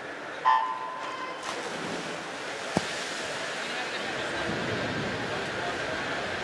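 Electronic start beep sounds once, briefly, about half a second in, starting the breaststroke race. It is followed by the splash of swimmers diving in and a rising wash of crowd noise and water, with a single sharp click near the middle.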